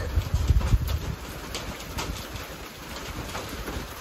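Steady rain with wind buffeting the microphone, the rumble of the wind heaviest in the first second or so.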